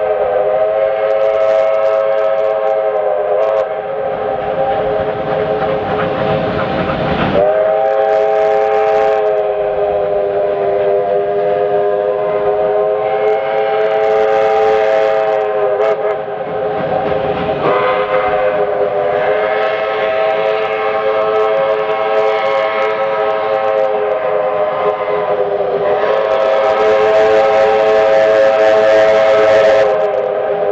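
Victorian Railways R class steam locomotive whistle held almost continuously, a chord of several steady notes that wavers slightly in pitch and dips briefly a few times.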